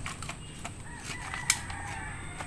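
A rooster crowing faintly in one long, drawn-out call, with small scraping clicks and one sharp knock about a second and a half in as a plastic scoop works dry chicken manure into a dustpan.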